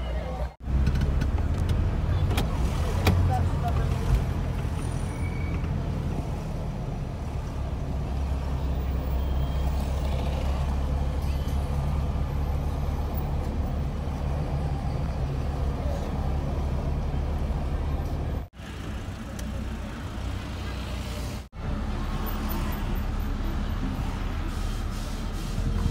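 Steady low rumble of a car's engine and tyres on the road, heard from inside the moving car. The sound cuts out sharply three times: just after the start, and twice near the end about three seconds apart.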